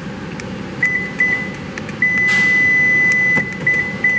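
Electronic beeping in one high pitch: a few short beeps, then one long tone of about a second and a half, then more short beeps, with a short rush of noise soon after the long tone starts. It is the response to a newly programmed Toyota remote key being tested.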